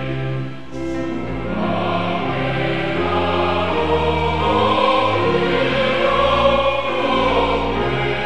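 A congregation singing a hymn together, many voices on held notes that move step by step, dipping briefly about half a second in and then swelling.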